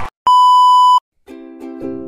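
A single loud, steady electronic beep tone lasting under a second, cut off sharply. After a brief silence, background music with plucked strings starts in a steady rhythm.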